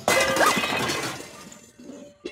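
Metal pots, pans, a colander and mixing bowls crashing out of a kitchen cupboard onto the floor all at once, the metal clattering and ringing, then dying away over about a second and a half.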